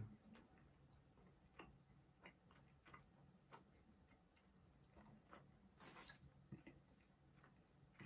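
Near silence: faint, irregular soft clicks of closed-mouth chewing on a chocolate bar, over a low steady hum.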